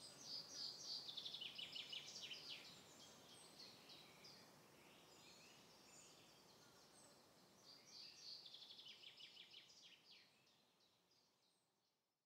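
Faint birdsong: two spells of quick, high chirping trills, one at the start lasting about two and a half seconds and another from about eight seconds in.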